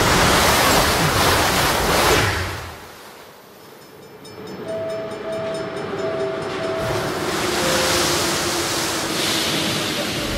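A passenger train rushing past at speed, its noise falling away about two and a half seconds in and then building again as it runs on. Over the running noise a chime sounds: four short, even tones, then one lower tone.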